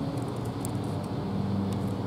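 Steady low mechanical hum of distant machinery, with a faint held tone under it.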